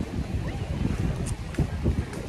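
Wind buffeting the microphone: an irregular, gusty low rumble.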